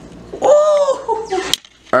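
A person's high-pitched vocal exclamation, held for about half a second, followed by a single sharp click.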